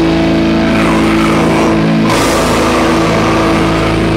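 A live metal band playing slow, sustained, heavily distorted electric guitar and bass chords, loud, with a new chord struck about two seconds in.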